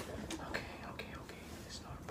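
Faint whispering and low murmured voices, with a word starting near the end.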